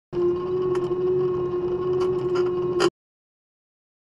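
Farm tractor engine running steadily with a constant drone while it pulls a seed drill. The sound cuts off suddenly about three-quarters of the way through, leaving silence.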